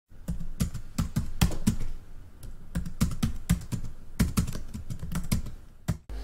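Typing on a computer keyboard: a fast, irregular run of keystroke clicks, with a short lull about two seconds in.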